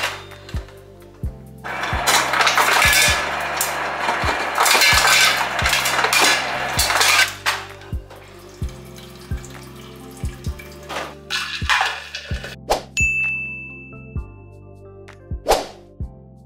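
Refrigerator door ice dispenser dropping ice into a tall tumbler, a clattering rattle of cubes lasting about six seconds, followed by a few separate clinks. Background music with a steady beat runs underneath.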